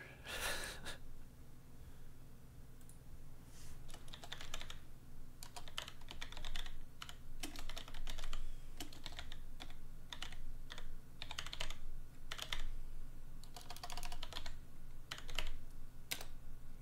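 Typing on a computer keyboard: short bursts of rapid key clicks with pauses between them.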